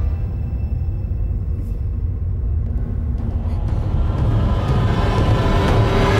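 Suspenseful film score: a low rumbling drone with faint held tones above it, building near the end.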